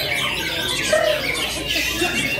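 Many caged white-rumped shamas (murai batu) singing at once in contest: a dense, unbroken mix of overlapping whistles, quick rising and falling glides and short notes.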